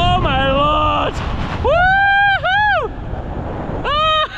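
A man screaming and yelling in high, drawn-out cries while bungee jumping upside down on the cord, several separate yells with the longest about two seconds in. Wind buffets the microphone, most heavily in the first second and a half.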